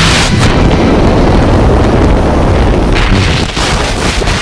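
Freefall wind rushing and buffeting over the camera microphone as a tandem skydiving pair leaves the aircraft and drops away: a loud, steady rush of wind. Soundtrack music is faint beneath it.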